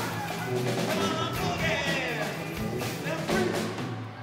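Live acoustic band playing an upbeat children's song on drum kit, guitar and tuba, with voices singing over regular drum hits; the song winds down near the end.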